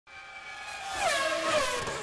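Electronic intro sting for a channel logo: a pitched sound fades in and swells, then glides down in pitch about a second in, over a rising hiss.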